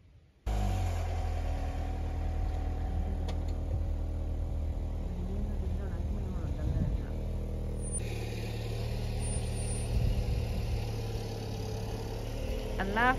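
A car's engine running steadily with a low hum as the car moves about a driveway. It comes in abruptly about half a second in.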